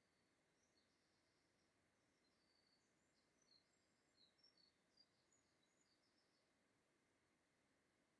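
Near silence: room tone, with a few very faint, short high chirps through the middle.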